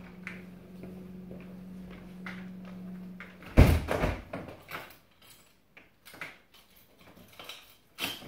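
A front door being handled: a loud knock of the door or its latch about three and a half seconds in, followed by a few smaller metallic clicks and rattles from the handle. A low steady hum runs beneath and stops at the knock.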